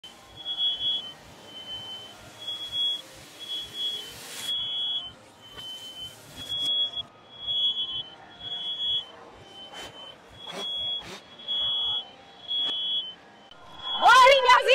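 A smoke alarm beeps over and over in short high-pitched tones, roughly one a second, set off by smoke from a burning frying pan. A few sharp knocks and clatters from the pan being handled sound between the beeps. The audio is played in reverse.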